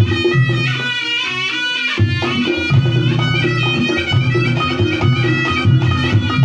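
Reog Ponorogo gamelan music: a shrill, reedy slompret melody wavering and bending in pitch over a steady beat of drum and gongs. The low drum and gong part drops out for about a second near the start, then comes back.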